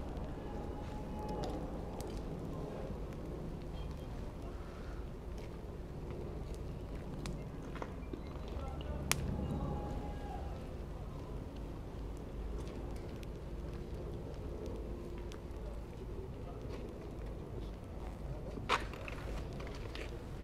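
Outdoor ambience: faint voices murmuring in the background, with scattered sharp clicks. The loudest click comes about nine seconds in and another near the end.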